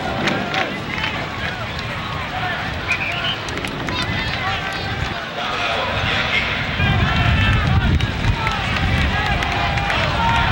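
Football stadium crowd around the camera: many spectators talking at once, scattered voices and calls rather than one clear speaker. A low rumble grows louder about seven seconds in.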